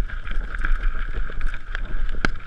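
Mountain bike rolling down a stony dirt trail: tyres running over loose rock with a steady rattle and a few sharp knocks from the bike. Wind rumbles on the camera microphone.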